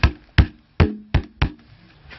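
Five quick, evenly spaced knocks on kitchenware over a bowl during food preparation, each with a brief low ring.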